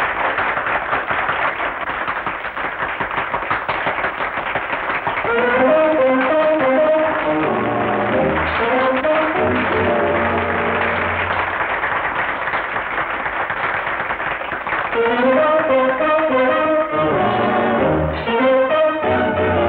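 Dance band music. A dense, busy passage gives way about five seconds in to clearer held chords and a moving melody line.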